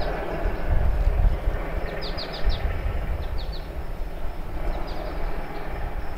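Outdoor ambience: wind rumbling and buffeting on the microphone, with birds chirping, a quick run of four chirps about two seconds in and a few more later.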